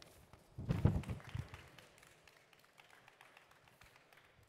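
A brief cluster of low thumps and sharp taps about a second in, then a few faint taps.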